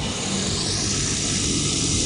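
Helmet washing machine starting its wash cycle: a steady, even hiss with a low hum underneath.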